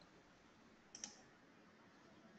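Near silence, broken once about halfway by a single short, faint click.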